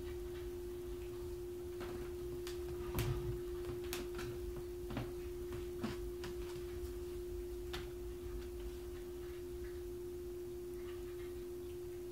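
A steady single mid-pitched tone hums throughout. Several short, light knocks and taps fall in the first half, footsteps on a wooden floor among them.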